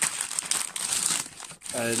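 Brown paper parcel wrapping crinkling and crackling irregularly as it is pulled and torn open by hand.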